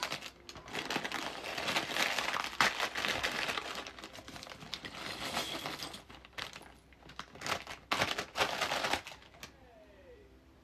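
Thin plastic Lego parts bag crinkling as hands rummage in it and shake it out, with the small plastic bricks rattling onto the pile. It comes in bursts: a long crackly stretch at first, then short rattles a few seconds later, stopping shortly before the end.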